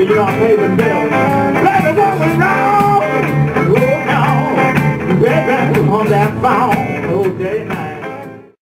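Two harmonicas playing blues together over a steady accompanying beat, their notes sliding up and down in pitch. The music fades toward the end.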